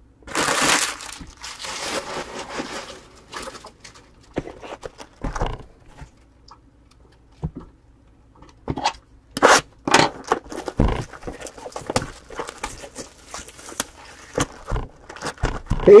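Plastic shrink-wrap being torn and crinkled off a sealed trading-card box for about three seconds, followed by scattered taps and knocks as the cardboard box is handled and opened.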